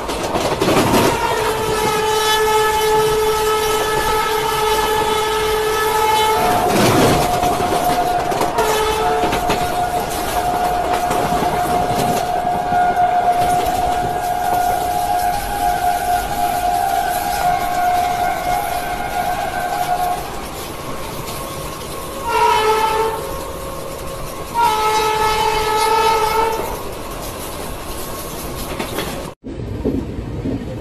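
Indian Railways passenger train running, its wheels clattering on the rails, while train horns sound: a long chord blast, then a long single-note blast, then two shorter chord blasts near the end.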